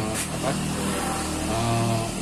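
A man's voice speaking haltingly, with a steady low engine hum underneath.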